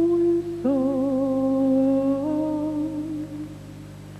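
Slow music carried by a single humming voice: long held notes with a slight waver, each sliding up into pitch, the second held for nearly three seconds and stepping up a little partway through, then dying away near the end.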